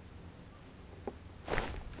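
Quiet, steady low outdoor rumble on the camera microphone, with one small click about a second in and a brief rustling hiss near the end.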